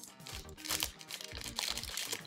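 Clear plastic packaging crinkling in irregular bursts as it is handled, over soft background music.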